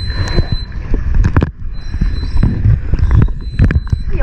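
Underwater sound heard through a camera's waterproof housing on a scuba dive: a loud, muffled low rumble with short bursts and knocks, typical of a diver's regulator breathing and bubbles. A faint steady high whistle runs under it.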